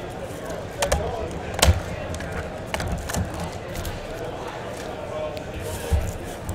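Small shrink-wrapped trading card boxes being handled and set down on a table: a few sharp taps and knocks, the loudest about a second and a half in, over faint background chatter.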